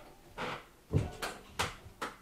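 A few short knocks or clunks, about four, spread through the two seconds.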